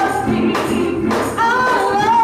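Gospel worship song sung by several voices with instrumental accompaniment, the singers holding long notes that slide between pitches.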